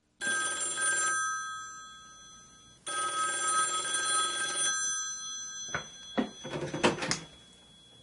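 A telephone ringing twice, each ring a set of steady tones that fades away, followed by a few sharp clicks near the end.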